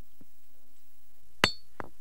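Basalt hammerstone striking a large flint core in hard-hammer knapping: one sharp stone-on-stone clink with a brief high ring about one and a half seconds in, a lighter click just after, and a faint tap near the start.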